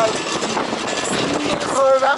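Steady wind and road noise from riding a motor scooter, with a person's voice coming in near the end.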